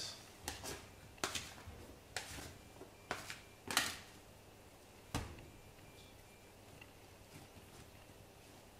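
Bread dough being worked and shaped into a ball by hand on a stainless steel counter: a scatter of soft knocks and taps, about a dozen in the first five seconds, the loudest a little under four seconds in, then quieter.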